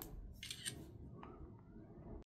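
iPad's camera-shutter screenshot sound, played faintly through the tablet's speaker about half a second in, after the power and volume buttons are pressed together to capture the screen.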